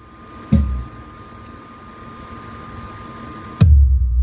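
Large outdoor sound system being sound-checked: two heavy bass thumps through the subwoofer stacks, about three seconds apart, each leaving a deep booming tail, over a steady high tone and hiss from the rig.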